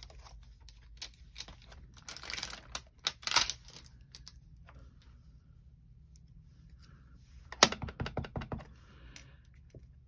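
Rubber-stamping handling noises: a clear stamp sheet and acrylic block rustling and clicking as they are picked up and set down, then a quick run of sharp taps about three-quarters of the way in as the stamp is inked on the pad and pressed onto card.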